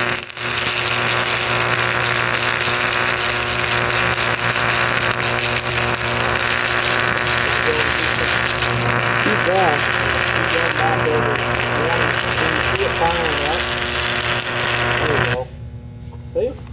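Stick welder's arc crackling steadily as a beginner runs a bead along a steel seam, over a steady low hum. The arc strikes just after the start and cuts off suddenly near the end.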